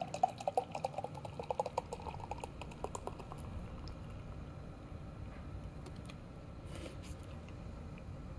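Carbonated sour ale poured from an aluminium can into a glass, glugging quickly with a rising pitch as the glass fills for the first two or three seconds, then trailing off into a faint steady hiss.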